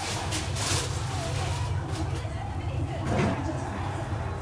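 A steady low hum runs under faint, muffled voices, with a brief rustling noise about half a second in.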